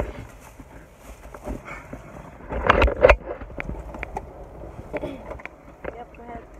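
Irregular knocks, bumps and rustles of people shifting about and handling things inside a car cabin, with the loudest burst of knocks about halfway through.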